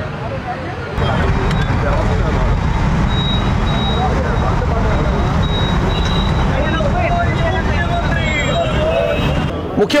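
A crowd of many voices talking and calling out at once over a heavy, steady low rumble, starting about a second in.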